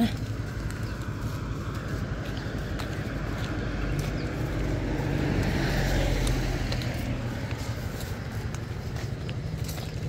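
A motor vehicle passing on a nearby road: a steady rumble and tyre noise that grows to its loudest about halfway through and then fades, over outdoor background noise.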